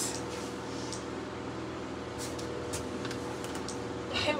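Quiet room tone: a steady low hum with a few faint soft ticks and rustles around the middle.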